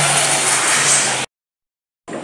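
A loud, steady rushing engine noise with a low hum in its first half, lasting about a second and a half and cut off abruptly.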